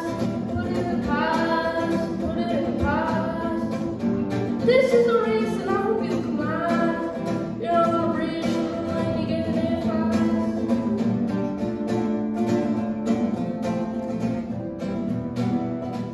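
A boy singing a song into a microphone while accompanying himself on acoustic guitar.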